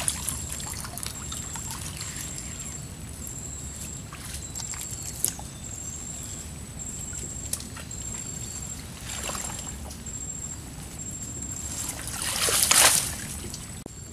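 River water trickling and sloshing as a wet, mud-laden bubu naga net trap is hauled out of the water and drains, with a louder burst of splashing near the end.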